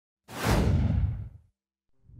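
A single whoosh sound effect for an animated logo intro: it comes in suddenly with a deep low end, its high part falls away, and it fades out by about a second and a half.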